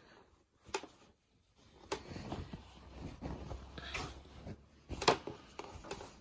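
Faint rustling of quilt fabric being shifted and positioned under a sewing machine's presser foot, with a few light clicks.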